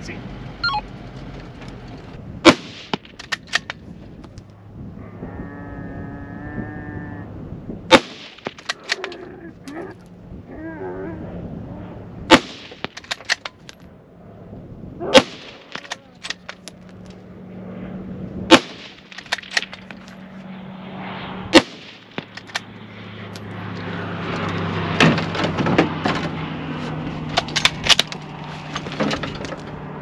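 Rifle fired from beside a parked ute: a string of single loud shots, about six of them, three to five seconds apart, with a steady low hum underneath.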